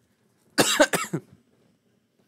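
A person coughing: a quick run of a few coughs about half a second in, lasting under a second.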